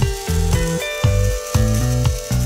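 A Panasonic three-blade electric shaver buzzing and hissing as it cuts beard hair, under background music with a steady beat.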